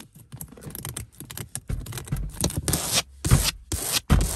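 Long acrylic fingernails scratching and rubbing the back of a car seat and its elastic net pocket, in quick, irregular strokes that grow louder in the second half.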